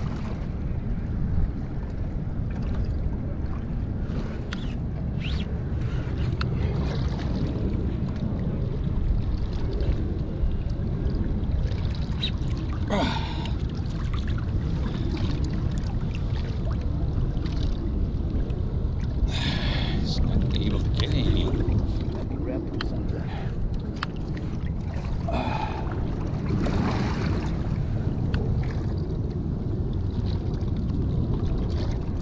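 Steady wind and water noise buffeting the microphone, with three short, strained vocal sounds from the angler as he hauls on a heavily loaded fishing rod.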